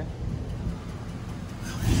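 Box Chevy Caprice's engine idling with a steady low rumble.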